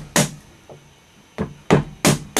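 A mallet driving a wood chisel into a white cedar propeller blank. A knock just after the start, a faint tap, then two knocks close together in the second half, each chipping out a small block of cedar between relief saw cuts.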